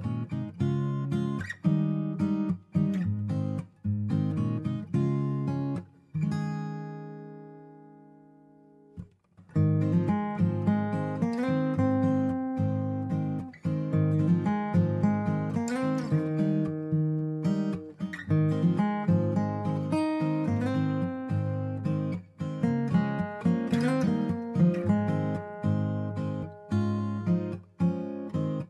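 Background music of strummed acoustic guitar. About six seconds in, a chord is left to ring and fade for a few seconds before the strumming picks up again.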